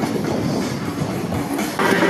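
Rumbling, clattering noise from a handheld camera moving fast with a freerunner as he vaults a padded block. Music starts suddenly near the end.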